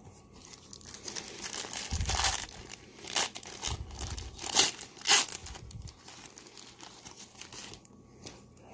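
The wrapper of a 1990-91 Pro Set hockey card pack being torn open and crinkled by hand, with sharp crackles between about three and five seconds in, then quieter rustling as the cards come out.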